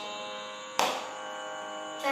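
Tanpura drone: steady sustained string tones, with one string plucked a little under a second in.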